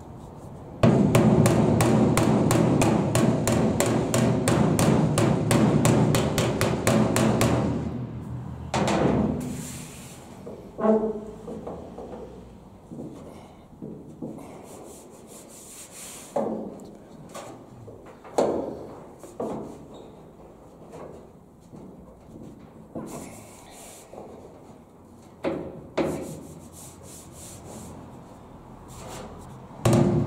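A hammer rapidly tapping a car's bare steel body panel, about six blows a second for the first seven seconds, the panel ringing under the blows. It is followed by occasional single taps and a hand rubbing over the metal, feeling its shape, until the tapping starts again at the end.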